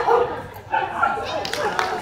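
A dog barking and yipping in excited bursts during an agility run, mixed with people's voices.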